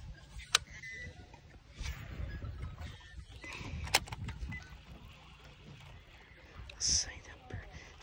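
Low wind rumble on the microphone, with two sharp clicks, one about half a second in and one about four seconds in, and a brief high-pitched call just before the end.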